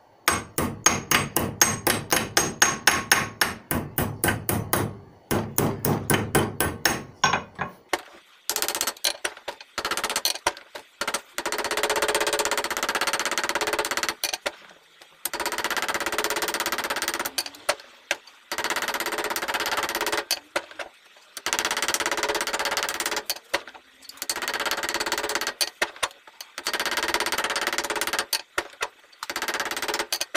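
Hammer blows on a metal cup washer held in a bench vise, folding its lip over a new tie bar bush: sharp ringing strikes about five a second for the first few seconds, then denser runs of rapid blows lasting two to three seconds each with short pauses.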